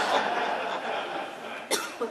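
A congregation laughing at a joke, the laughter dying away over the first second and a half, then a short, sharp breath sound close to the microphone near the end.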